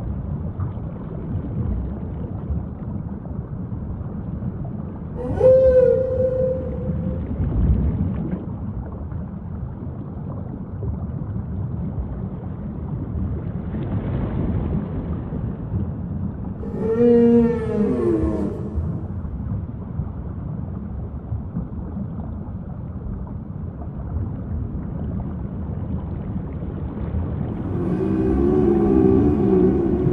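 Whale calls over a steady rushing background. There are long pitched calls that glide up and down, one about five seconds in and a longer one around seventeen seconds, then a wavering call near the end.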